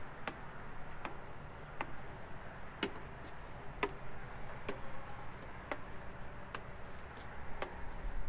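Light, sharp taps about once a second as a handheld moisture meter is set against a fiberglass boat hull again and again while it is moved along the side. No warning beep sounds, so the meter flags no wet spots.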